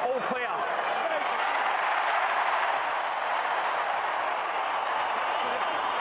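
Stadium crowd cheering and clapping as a goal is confirmed after an umpire review. The noise swells over the first couple of seconds and then holds.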